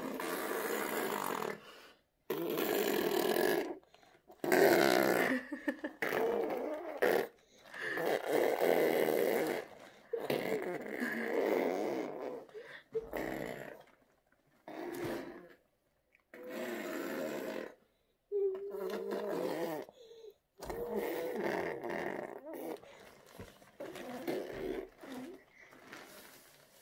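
A toddler making a long string of wordless buzzing, throaty mouth noises in bursts of one to two seconds with short gaps, some with a wavering pitch.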